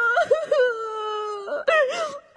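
A woman's voice wailing tearfully: a wavering cry that settles into one long held wail, then breaks into a shorter sob near the end.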